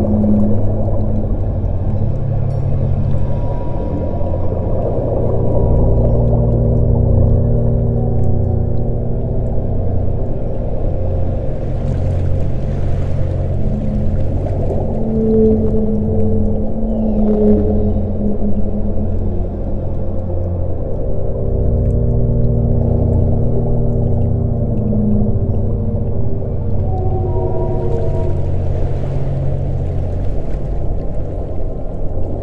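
Ambient soundscape of a steady low drone with long whale calls layered over it, held on a few pitches and some sliding. Soft hissing swells come in about twelve seconds in and again near the end.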